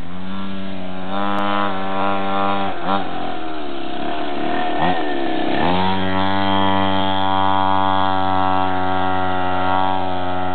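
Mini dirt bike's small engine revving in short blips, easing off about five seconds in as the bike takes the dirt bend, then picking up and held at steady high revs as it pulls away.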